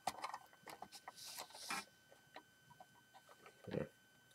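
Light clicks and rattles of plastic Lego pieces as a Lego Imperial Shuttle model is handled, with a brief rustle about a second in.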